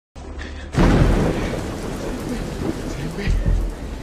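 Thunderstorm sound: a sudden loud thunderclap just under a second in, then a deep rolling rumble over steady rain.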